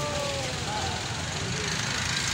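A small quadcopter drone hovering overhead, its propellers giving a steady buzzing whir. Crowd chatter and street noise run underneath.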